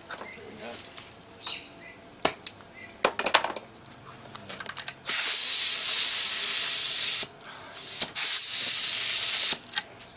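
Compressed air hissing loudly in two bursts, about two seconds and then a second and a half, after a few clicks of metal fittings: air from the hose rushing through the lid fittings of a resin-casting pressure pot as it is pressurised.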